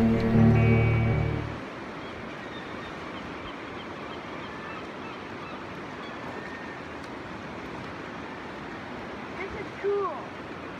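Background music with held notes stops about a second and a half in. After it comes the steady rush of river rapids, with a brief voice just before the end.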